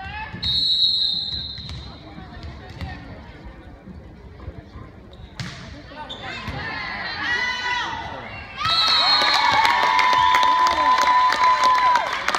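Referee's whistle blows a long steady blast for the serve about half a second in, and a volleyball is struck about five seconds later. Players and spectators then shout during the rally, and from about nine seconds in a short whistle blast is followed by loud cheering, a held shout and clapping.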